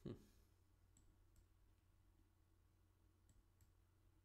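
A few faint, sharp computer mouse clicks, in two pairs, as chess pieces are moved on screen; otherwise near silence.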